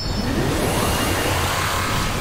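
A whooshing transition sound effect: a dense, steady wash of rushing noise with a low rumble underneath, over background music.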